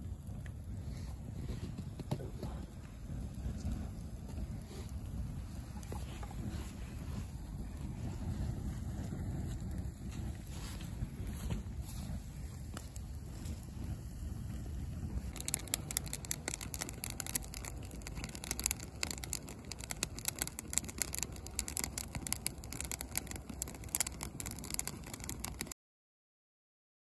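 Bonfire with a couch burning in it: a steady low rumble of flames, then from about halfway, dense irregular crackling and popping.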